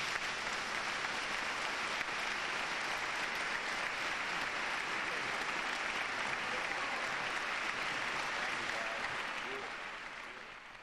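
Large audience applauding steadily, the clapping dying away near the end.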